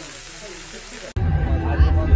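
Burger patties sizzling in a cast iron grill pan, as an even hiss with a faint voice. About a second in it cuts off suddenly to loud talking over bass-heavy music and crowd chatter.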